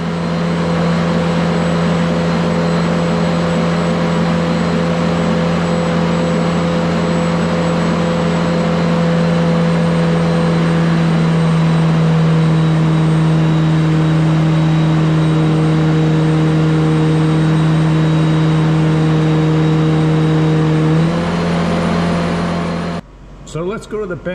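Turbocharged Detroit Diesel 4-53T two-stroke diesel running at a steady speed: a loud, even drone with a faint high whine above it. Its pitch shifts slightly about halfway through and again near the end, then it cuts off abruptly.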